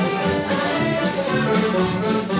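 Live folk dance band playing a lively dance tune for the dancers, a melody over an even beat of about four strokes a second.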